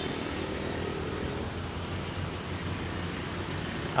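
Steady low rumble of distant engine noise, with a faint hum that fades out about a second and a half in.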